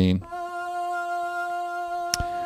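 A single sustained sung note from the Soundiron Voices of Gaia sampled-vocal library in Kontakt, held at one steady pitch. It starts about a quarter second in and plays at a low level.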